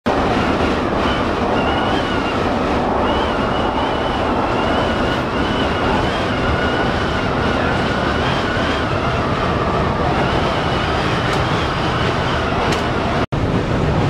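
Interior running noise of a coach driving at speed: a steady engine and road rumble with a faint, wavering high whine. The sound cuts out for an instant near the end.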